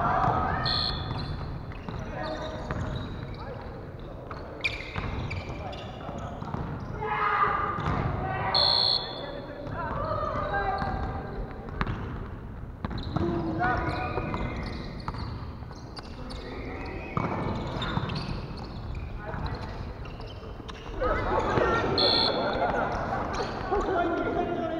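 Indoor volleyball being played: the ball being struck and hitting the floor, with players calling out to each other in a large, echoing gym hall.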